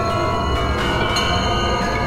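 Live-coded experimental electronic music from TidalCycles: dense layers of many sustained, high ringing tones over a low rumble, holding steady.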